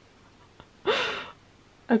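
A woman's single sharp, breathy gasp of surprise, about a second in, followed by the start of speech at the very end.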